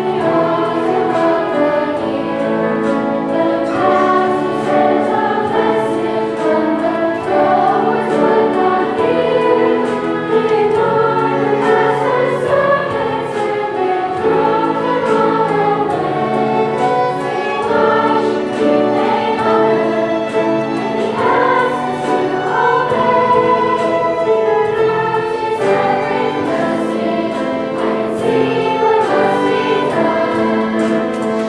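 Children's choir singing a song together with instrumental accompaniment, continuing steadily throughout.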